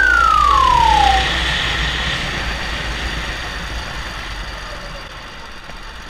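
Onboard sound of a Honda four-stroke 270cc kart engine with wind noise, fading steadily as the kart slows down. In the first second a single high tone glides smoothly downward in pitch.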